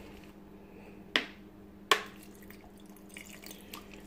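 A small splash of water added to a blender cup of mayonnaise and chipotle: two sharp drips, about a second in and again just under a second later, over a faint steady hum.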